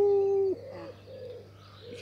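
A bird hooting: one long, loud, steady hoot that stops about half a second in, followed by a run of softer short hoots. The listeners take it for an owl.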